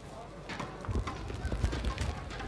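Bare feet thudding on a judo tatami mat as two judoka step in toward each other: a quick, uneven run of dull thumps starting about a second in, over the murmur of an arena.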